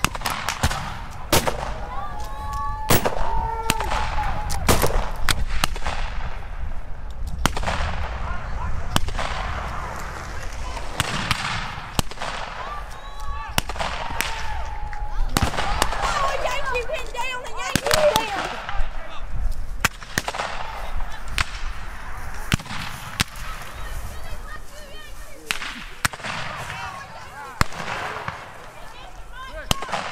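Scattered black-powder rifle fire from a reenactment skirmish line: many irregular single shots, some sharp and close, others farther off, with shouted voices in between.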